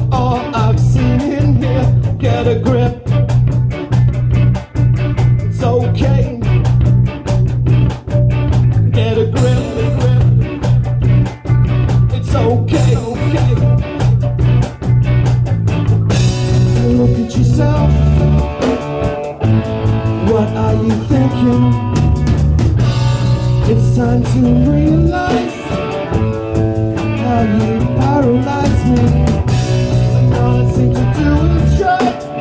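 A live rock band playing: an electric guitar over a drum kit, with quick, even cymbal strokes and guitar lines that bend in pitch; the sound gets fuller about halfway through.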